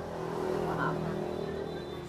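A low, steady motor-vehicle engine hum that swells slightly in the middle and eases off again.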